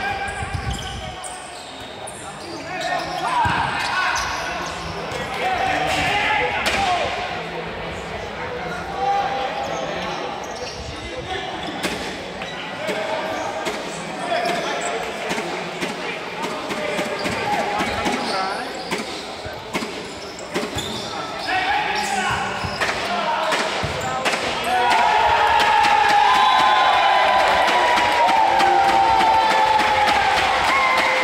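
A futsal being kicked and bouncing on an indoor court, in a series of sharp thuds, with players' shouts echoing in the hall. The sound grows louder over the last few seconds with long held shouts.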